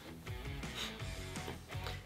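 Quiet background music, with guitar.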